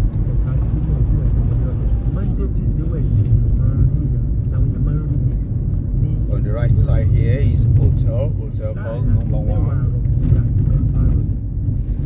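Car interior driving noise: the steady low rumble of the engine and tyres on the road, heard from inside the cabin. A voice comes in briefly in the second half.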